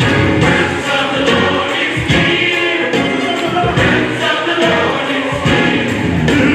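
A gospel choir singing continuously.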